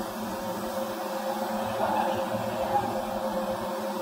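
Steady machinery hum in a factory hall, with a few steady low tones under a hiss.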